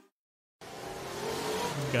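About half a second of dead silence, then a sound effect of a car accelerating: a rush of noise that grows steadily louder, with a faint rising pitch.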